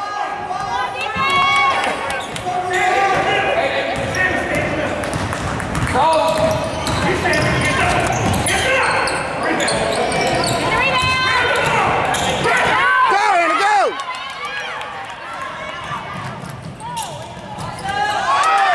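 A basketball bouncing on a hardwood gym floor during play, with players and spectators calling out and shouting throughout.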